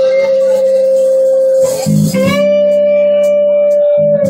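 Live band playing an instrumental rock ballad: an electric guitar holds a long sustained lead note, breaking off briefly about two seconds in and picking it up again, over bass guitar and keyboard.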